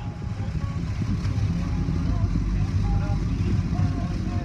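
Automatic car-wash tunnel heard from inside the car: water spray hitting the windshield over the low rumble of the wash machinery, growing louder over the first second or two.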